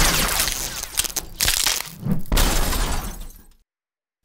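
Car crash: a loud smash with breaking glass, followed by a few more crunching impacts and clattering debris that die away and stop about three and a half seconds in.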